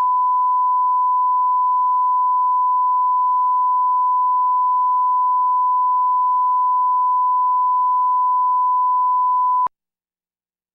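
Broadcast line-up test tone played with colour bars: one steady, unwavering loud beep at a single pitch, cutting off suddenly near the end.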